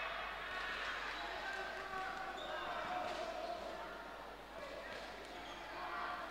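Dull thuds from boxers' feet and gloves on the ring canvas during a bout, with voices calling out in a hall.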